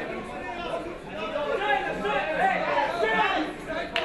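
Many voices of an indoor fight crowd talking and calling out at once, echoing in a large hall, with a single sharp click at the very end.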